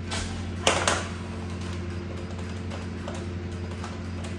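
Two sharp knocks in quick succession, less than a second in, as a cloisonné enamel vase with a metal base is set down on a table, over a steady low hum.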